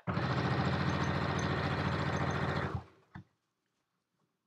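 Brother electric sewing machine running a seam in a steady stitch rhythm for a little under three seconds, then stopping.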